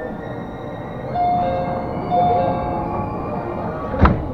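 Monorail car standing at a station platform: a steady hum, with faint held musical tones and two louder held notes about one and two seconds in.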